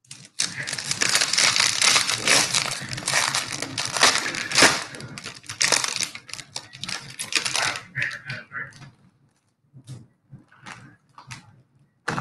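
Foil baseball-card pack wrapper being crinkled and torn open, a dense crackling for about eight seconds, then a few short separate crinkles.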